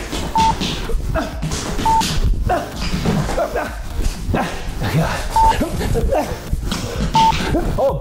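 Quick footwork on a hard floor during a speed drill: rapid foot patter, shuffles and sprint steps, with short grunts and squeaks. A short high electronic beep sounds four times.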